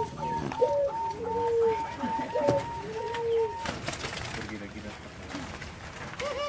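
Zebra doves (perkutut) cooing: a fast run of short, high notes over lower coos that rise and fall and repeat about every second and a half, stopping a little past halfway.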